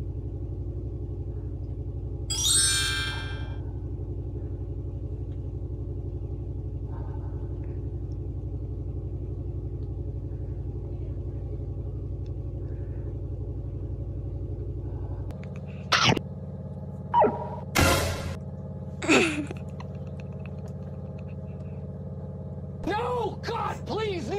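Washing machine running in the next room with a steady low hum, which changes abruptly to a different hum about fifteen seconds in. Several short swooping and boing-like effect sounds follow in the last third.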